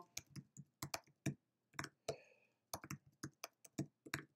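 Typing on a computer keyboard: irregular, separate key clicks in short runs as a password is entered twice.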